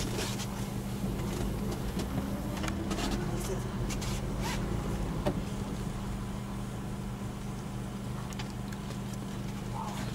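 Game-drive vehicle's engine idling with a steady low hum, with a few faint clicks over it.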